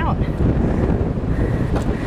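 Wind buffeting the microphone: a loud, steady low rumble.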